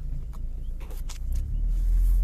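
Car engine running, heard from inside the cabin as a steady low rumble that grows louder about one and a half seconds in, with a few short clicks over it.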